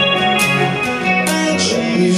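Live progressive rock band playing an instrumental passage between vocal lines: electric guitar and keyboards holding sustained chords over drums and cymbals, amplified through the PA.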